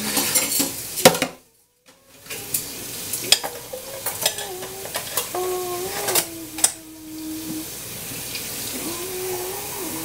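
Dishes and cutlery clattering and knocking at a kitchen sink, with a short cut to silence about a second and a half in. Over the last few seconds the clatter gives way to a steady rush of running tap water.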